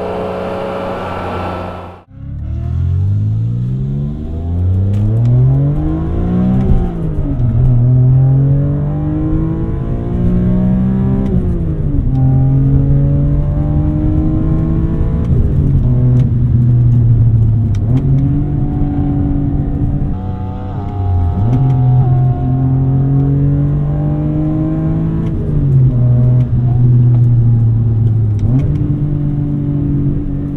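BMW E46 M3's S54 inline-six, fitted with a K&N intake and Megan Racing exhaust, accelerating through the gears of its manual gearbox. The engine note drops out briefly about two seconds in, then climbs steadily in pitch, falling at upshifts about seven and eleven seconds in. It then holds a steadier note with small dips and rises.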